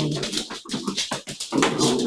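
A dog making two short, rough vocal sounds, one at the start and another about a second and a half in.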